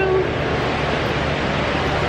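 Steady, featureless roar of a large, busy indoor hall's ambience, with a low hum under it and no distinct event.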